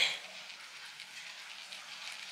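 Pen writing on an eggshell: faint, steady scratching.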